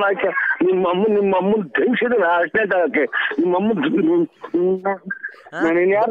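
Speech only: a voice talking rapidly, with a few brief pauses.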